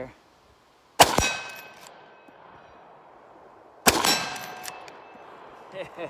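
Two shots from a Japanese-made Winchester Model 1894 lever-action carbine in .30-30, about three seconds apart, each followed by a fading ring from a struck steel target.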